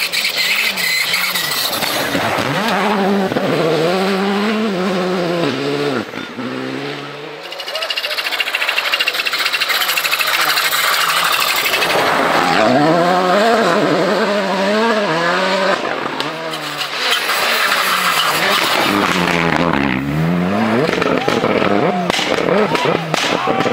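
Rally cars passing at speed one after another, three passes, each engine revving hard with its pitch rising and falling through throttle lifts and gear changes. Near the end the exhaust pops as a car pulls away.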